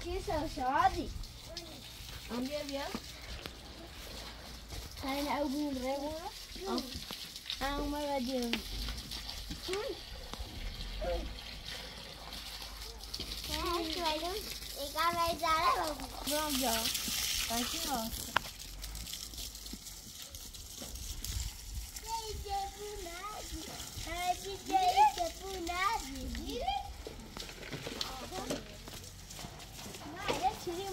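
Voices talking on and off in short phrases, with water from a garden hose hissing for about two seconds around the middle.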